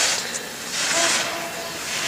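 Skis carving slalom turns on snow: a hiss of the edges scraping the snow with each turn, swelling and fading about once a second.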